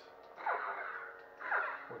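Proffieboard neopixel lightsaber playing its sound font through its speaker: a faint steady hum with two falling swoosh effects about a second apart, the first about half a second in.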